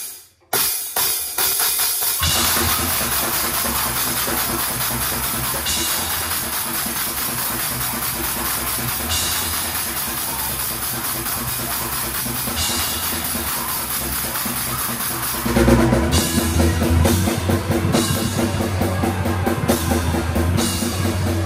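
A live rock band starting a song, led by a drum kit with Zildjian cymbals: a few separate hits in the first two seconds, then the full band playing steadily, louder from about fifteen and a half seconds in.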